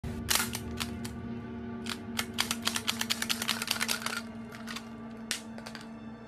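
Movie-scene soundtrack: a steady low drone under a series of sharp clicks and snaps that crowd into a fast run in the middle.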